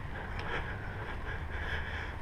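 Steady outdoor background noise: a low rumble with a faint hiss above it and no distinct event.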